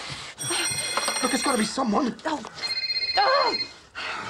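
A phone ringing with an electronic ringtone: two rings, the first about one and a half seconds long, the second shorter and at a different pitch about a second later.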